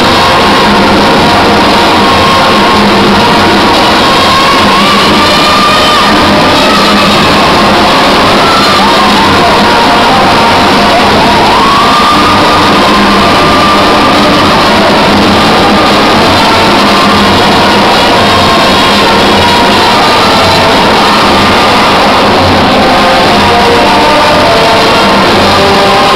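Loud live music, very loud throughout, with a crowd shouting and cheering over it.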